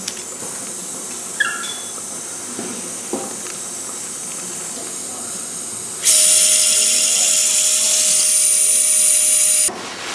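Surgical power drill running in one steady burst of about three and a half seconds, starting about six seconds in and stopping abruptly, as it drives a Kirschner wire (K-wire) into the humerus to fix a lateral condylar fracture. A steady background hiss comes before it.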